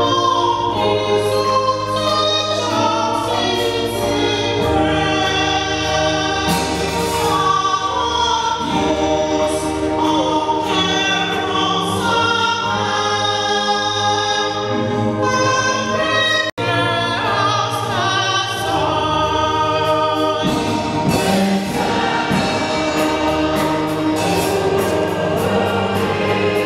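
A church choir singing a gospel hymn, with steady low notes held underneath the voices. The sound cuts out for an instant about two-thirds of the way through.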